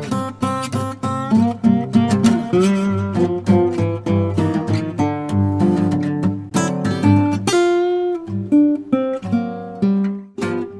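Background music played on acoustic guitar: a run of plucked notes and strums.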